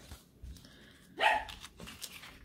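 A pet dog barking once, loudly, about a second in, with a fainter sound just after.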